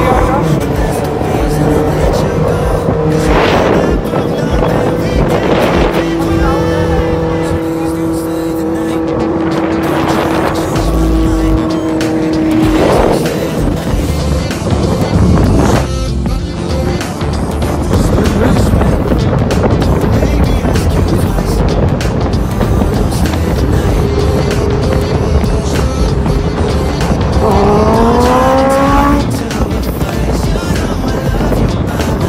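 Sport-motorcycle engines running at a steady cruise with wind rush, and several whooshes of vehicles going past. Near the end an engine revs up, its pitch climbing.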